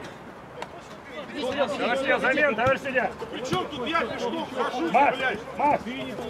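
Speech only: men's voices shouting on an outdoor pitch, a repeated "давай, давай" ("come on, come on") over other chatter.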